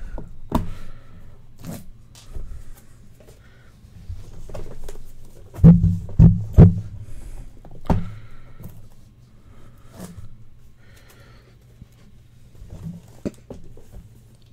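Hands handling and opening a hard black trading-card briefcase: scattered clicks and knocks from the case, with three loud thumps close together about six seconds in and another about two seconds later.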